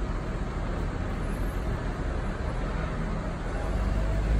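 City street traffic: a steady rumble of passing vehicles.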